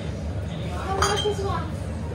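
Glass beer bottles clinking against each other as they are lifted off a fridge shelf, with one sharp, ringing clink about halfway through.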